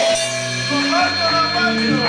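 Live rock band playing: electric guitars and bass holding and stepping through low notes over drums and cymbals, with a voice over the top.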